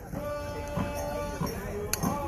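Music over crowd chatter: a long high note held steady for just over a second, then another note sliding near the end.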